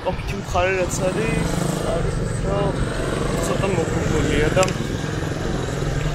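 A person talking in short phrases over a steady low engine rumble.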